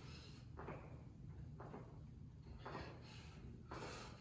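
Faint, quick exhalations about once a second, the breathing of a man working hard through squatting side punches, over a low steady room hum.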